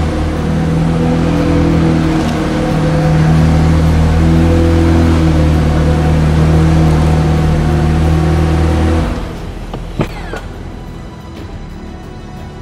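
McLaren 720S twin-turbo V8 running as the car is driven slowly out, the engine note shifting with light throttle, then switched off about nine seconds in; a sharp click follows about a second later.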